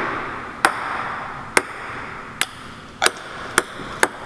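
A plastic ping-pong ball bouncing on plywood stairs: six sharp, light clicks that come quicker and quicker toward the end.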